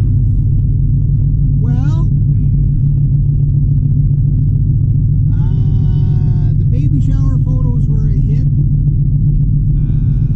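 Steady low rumble of road and engine noise inside the cabin of a moving Honda Civic, with a voice heard in a few short phrases over it.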